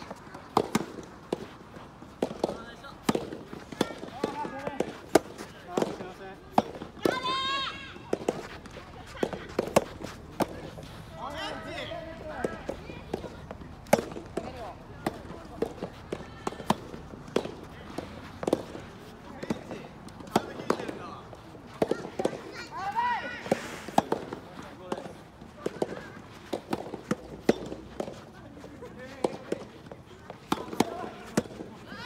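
Soft-tennis play: frequent sharp pops of rackets striking the soft rubber balls and balls bouncing on the court, some from neighbouring courts. Players' voices call out about 7 seconds in, again around 12 seconds and again near 23 seconds.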